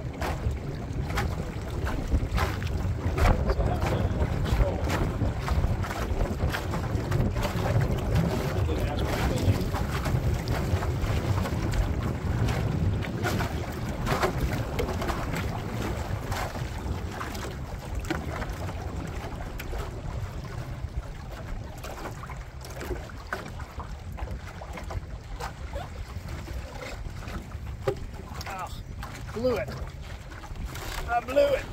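Wind buffeting the microphone, over choppy water slapping against a small aluminum boat's hull. It is loudest in the first half and eases off later.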